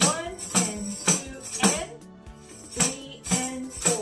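Handheld jingle tambourine tapped in a rhythmic pattern: four taps about half a second apart, a short pause, then three more, each tap followed by a jingle shimmer.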